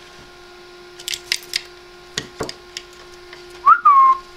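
Pet rainbow lorikeet making a few short, sharp clicks, then near the end a loud, short whistle that rises and then falls in pitch.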